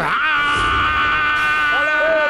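A cartoon octopus monster's long, high-pitched scream, held at one steady pitch; lower cries from other voices join in near the end.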